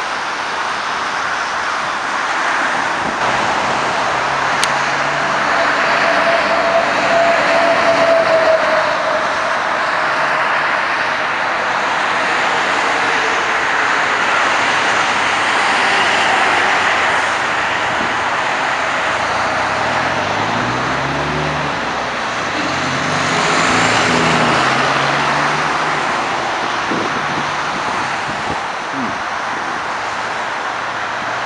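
Steady rush of multi-lane highway traffic passing below, mostly tyre noise, swelling about eight seconds in and again around twenty-four seconds. In the second half a heavy vehicle's engine note rises and falls in pitch as it goes by.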